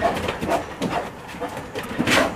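Brown bear making short, irregular vocal sounds while handling a large rubber tyre.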